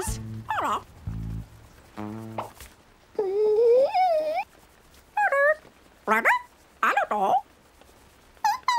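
Wordless vocal sounds from cartoon animal characters: a long wavering call about three seconds in, then three short rising squeaky cries in the last few seconds. Low sustained music notes play in the first second or so.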